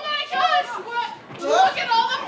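Several stage actors' raised, high-pitched voices, talking over one another in character.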